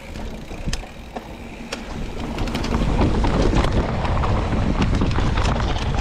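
Mountain bike riding down a dirt trail: tyre and rushing noise that grows louder from about two seconds in as speed picks up, with scattered clicks and knocks from the bike rattling over the terrain.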